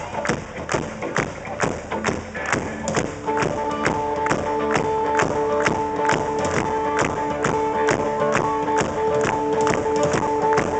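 Live country-rock band starting a song: a steady drum beat opens, and about three seconds in the electric guitars and the rest of the band come in with sustained chords over it.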